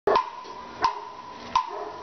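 Three sharp percussive knocks, evenly spaced about three-quarters of a second apart, each with a short ring: a count-in for the band.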